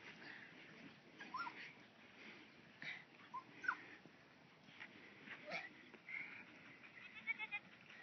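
A goat bleating faintly in several short, separate calls.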